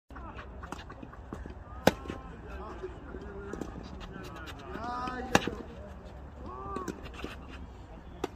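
Tennis balls struck by rackets during a rally: two loud, sharp hits about three and a half seconds apart, with fainter hits between them. Players' voices call out between the shots.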